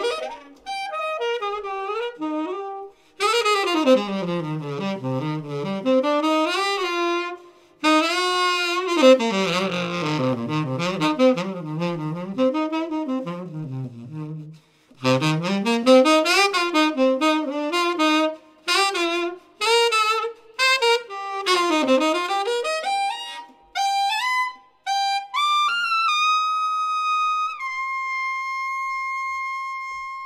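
Jazz woodwind trio of saxophones playing together live, in phrases broken by short rests. Near the end quick rising runs settle onto one high note held for a few seconds.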